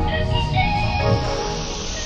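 Background music with a rising whoosh of noise building up through it.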